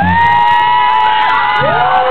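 A loud, long, high whoop or yell. It rises at the start and is held steady for about a second and a half, and a second, lower held yell comes in near the end.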